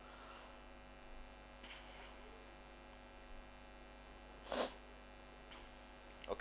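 Low, steady electrical mains hum in the lecture recording, with a brief soft burst of noise about four and a half seconds in.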